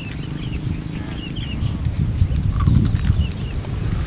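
Small birds chirping in many short, high calls, over a low, uneven rumble that swells about two and a half seconds in.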